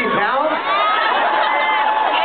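Concert crowd cheering and shouting, many voices overlapping, with a few long held yells.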